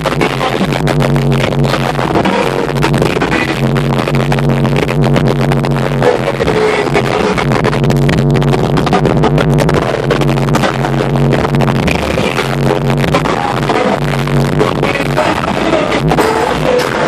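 Loud music with a repeating bass line, played through the high-power sound systems of car audio show vehicles.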